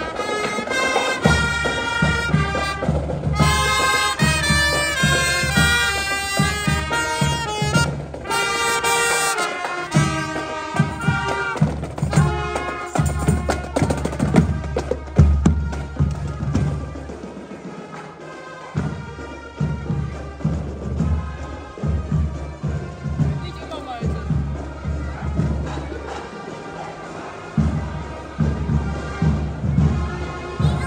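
Marching band playing in the street: a melody on wind instruments over a steady drumbeat. The melody fades about halfway through, leaving mostly the drums.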